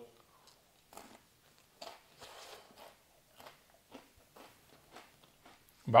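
A person chewing a mouthful of crisp ice cream wafer cone: a series of soft, irregular crunches, about one every half second, as the wafer layers crack between the teeth.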